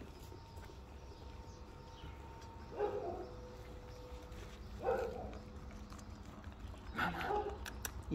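Dogs eating wet food from a stainless steel bowl. Three short eating noises come about two seconds apart, over a faint steady hum.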